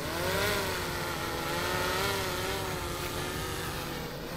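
A DJI Air 3 quadcopter flying overhead: its propellers give a multi-toned whine whose pitch wavers up and down as it manoeuvres, over a steady rush of air.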